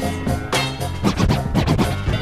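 Funk/breakbeat music in a DJ mix, with a record scratched back and forth on a turntable over the beat from about half a second in until near the end: quick rising and falling sweeps.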